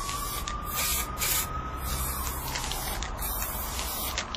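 Aerosol spray-paint can hissing in several short bursts, over a steady low drone and a faint tone that rises slightly and then slides down.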